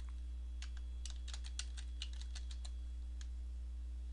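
Computer keyboard being typed on: a string of quick, irregular key clicks as a word is entered, over a steady low hum.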